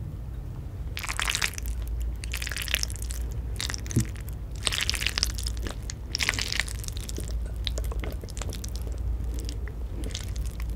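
Close-miked chewing of a mouthful of food, heard as a run of crunchy, crackly bursts about once a second, then softer scattered clicks.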